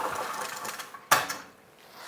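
Pull-down projector screen being drawn down, its roller mechanism rattling, then a single sharp clunk about a second in.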